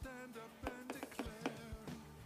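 Faint background music with a handful of light clicks: a spoon knocking against the plastic bowl of a food processor as dip is scooped out.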